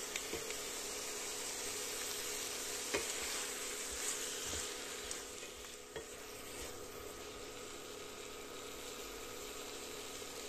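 Green beans and tomato-onion paste sizzling in a non-stick kadhai while a wooden spatula stirs them, with a few light knocks and scrapes against the pan. The sizzle eases a little about halfway through.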